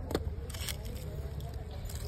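Faint voices in the distance over a steady low rumble, with a few soft clicks and rustles from a small cardboard box being handled.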